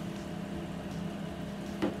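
A knife slicing between the bones of a rack of smoked baby back ribs on a plastic cutting board, over a steady low hum and hiss.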